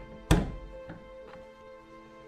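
A wooden wardrobe door pushed shut with one loud thunk about a third of a second in, followed by a couple of faint clicks, over background music.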